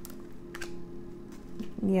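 Tarot cards being handled: a few light clicks and taps as a card is drawn from the deck and laid on the table, over a faint steady hum.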